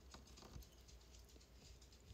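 Near silence with a few faint soft clicks of eating: a bite of fried meat taken from wooden chopsticks and chewed with the mouth closed.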